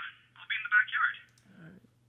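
A voice speaking over a telephone, thin and narrow-sounding, over a faint steady low hum; the talking stops about a second in, followed by a brief low murmur.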